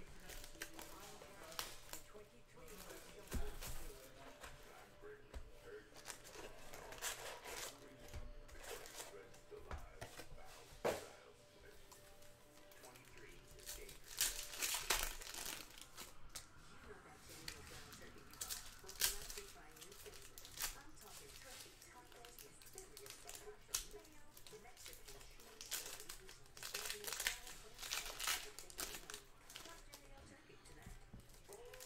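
Plastic shrink-wrap being torn off a trading-card box and foil card packs crinkling as they are handled, in irregular crackly bursts.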